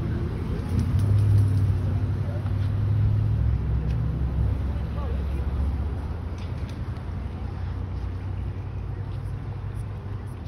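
Low rumble of a nearby motor vehicle, strongest for the first four seconds or so and then fading away.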